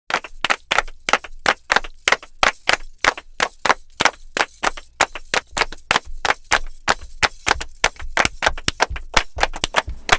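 Percussion-only intro music: a fast, uneven rhythm of sharp percussive hits, about four or five a second, with no melody.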